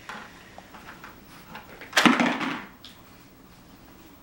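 A coin dropped into a small metal coin-counting bank: quiet handling, then one loud clattering clink about halfway through.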